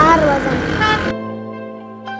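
A voice over road traffic with a short vehicle horn toot. About a second in, the sound cuts off abruptly to soft background music with sustained notes.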